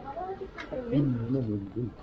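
A person's voice talking indistinctly, with no words that can be made out.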